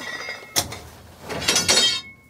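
Metal-on-metal clanks and clinks from mining equipment, each with a short ring: one sharp strike about half a second in, then a quick cluster of strikes near the end.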